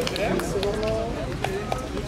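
People's voices talking indistinctly in the open, with scattered short clicks and steps of shoes on pavement.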